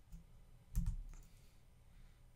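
A few light computer keyboard keystrokes clicking while code is typed.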